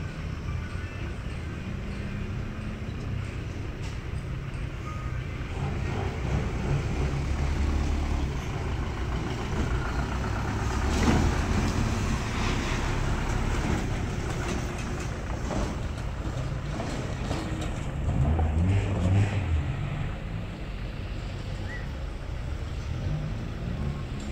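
Road vehicles passing on a dirt road, with a small flatbed pickup truck's engine driving close by and loudest about halfway through; another vehicle passage swells later on.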